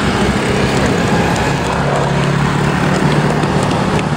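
Engine of a rail maintenance train running steadily as it passes along the track, a low hum over a constant noisy rumble.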